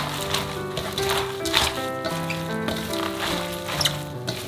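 Background music with held notes, over the wet crunching and slapping of salted napa cabbage being tossed by hand with chili seasoning in a stainless steel bowl, about once a second.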